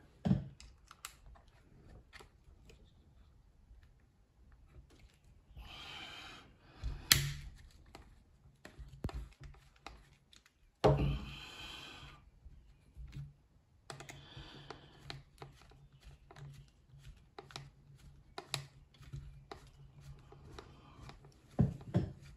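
Scattered small clicks and taps of Allen keys and screws on a Valken M17 paintball marker as the magwell screws are worked out, with a few short bursts of handling noise as the marker is turned in the hands.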